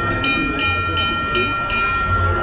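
Streetcar bell on a red trolley ringing rapidly, about three strikes a second, its tone hanging on between strikes.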